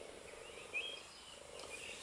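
A bird chirping faintly, a few short notes, over quiet outdoor background hiss.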